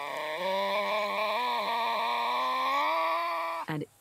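Tasmanian devil giving one long yowl, about three and a half seconds, slowly rising in pitch before it cuts off.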